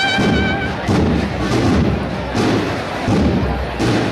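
A band's cornet holds a long final note that stops under a second in, followed by a series of dull low thuds.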